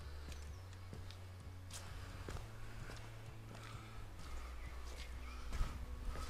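A few scattered footsteps and small knocks of someone moving about, over a steady low rumble.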